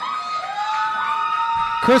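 Microphone feedback through a public-address system: two steady, high ringing tones, one of them sliding up into place about a quarter second in, over hall noise. A man's voice comes in near the end.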